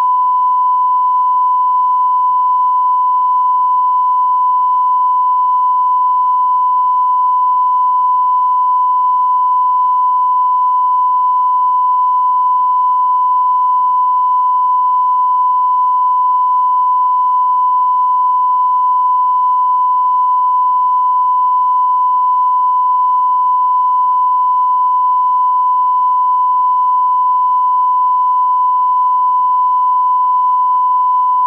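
A steady electronic test tone: one unbroken, fairly high pitch that holds at the same loudness throughout, with faint hiss beneath it.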